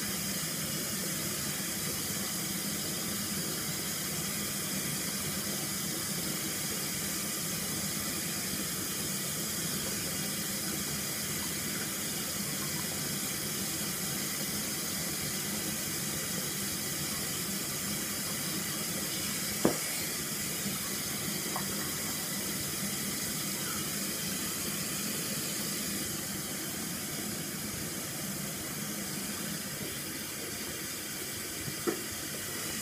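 Bathroom tap running steadily into the sink. A single sharp click comes about twenty seconds in, and the running gets a little quieter near the end.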